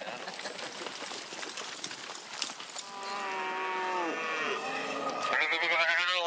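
Cattle bawling: one long call beginning about halfway through that drops in pitch as it ends, and a second call starting near the end, over a background of scattered clicks and noise.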